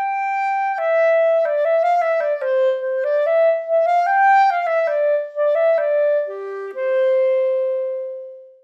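Sampled solo clarinet from the 8Dio Clarinet Virtuoso software instrument playing a quick legato melody, heard through its close microphones alone with no reverb. It ends on a long held note that begins to die away near the end.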